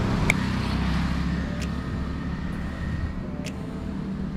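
A motor vehicle engine running close by on a street, a low steady hum that eases off about halfway through, with three light clicks.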